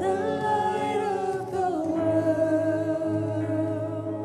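Live worship band music: a sung melody over held chords, with the sung line sliding down to a lower note about halfway through.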